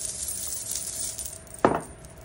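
A coin tossed onto a wooden table lands with one sharp clink about a second and a half in. It is a coin toss for a yes-or-no answer.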